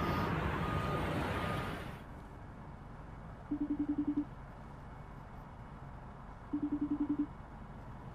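City street traffic noise from news footage with three faint high beeps in the first two seconds, then a quieter background broken twice by a short rapid buzzing about three seconds apart.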